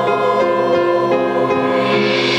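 Church choir singing held notes with a small orchestra accompanying.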